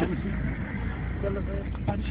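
Steady low rumble of a motor vehicle running, with faint men's voices under it and a man's voice starting again near the end.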